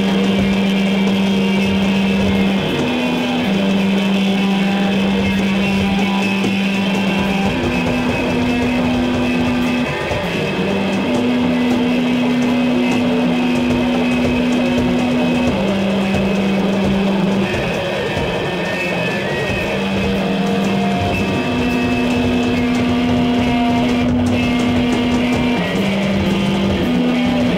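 Loud live band music: electric guitar and drum kit, with long held low notes that step between two pitches every few seconds.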